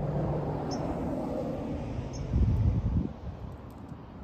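Low steady rumble of traffic, growing louder for about a second around the middle. A few short, high bird chirps sound in the first second and a half.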